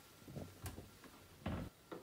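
Microwave oven door being shut, a soft thump about one and a half seconds in, among a few light handling clicks; a click from the timer dial being turned follows near the end.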